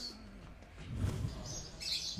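A brief quiet pause in a room, then small birds chirping near the end.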